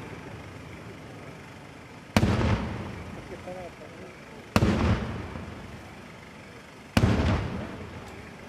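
Three loud firework bangs about two and a half seconds apart, each followed by a rolling echo that dies away over about a second.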